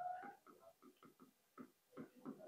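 Near silence: room tone, with a faint brief whine right at the start and a few soft, faint ticks.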